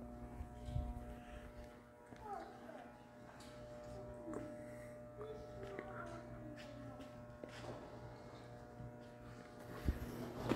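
Steady machine hum made of several held tones at once, with faint distant voices and music under it, and a single thump near the end.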